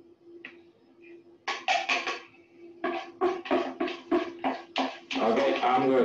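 A spoon scraping dry flour out of a small bowl into a mixing bowl, in a run of short strokes about four a second that starts a second and a half in, over a steady low hum. A man's voice comes in near the end.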